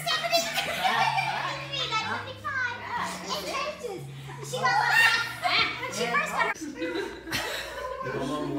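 Lively voices and laughter over background music with a steady bass line that changes note about once a second.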